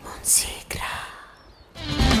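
A person's soft breathy whisper with a brief hiss, and a single click, as a song ends; music starts near the end.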